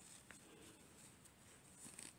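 Near silence: room tone, with faint handling of fabric and a couple of tiny ticks.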